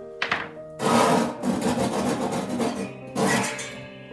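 Metal ash pan of a wood-burning stove being pulled out: a knock, then about two seconds of loud scraping and a shorter scrape near the end, over background music.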